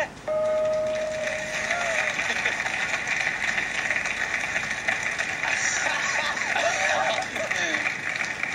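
A sung note held for about two seconds, then a studio audience applauding and cheering steadily, with a few shouts near the end.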